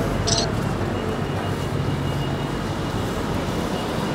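Busy city street traffic: a steady rumble of engines and tyres, with a short hiss about a third of a second in and a faint steady high whine through the middle.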